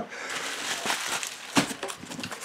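Rustling and crinkling of packing material (foam sheets and plastic wrap) as graded card slabs are unpacked by hand, with a short knock about one and a half seconds in.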